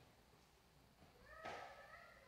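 Near silence broken by one brief, faint animal call about one and a half seconds in.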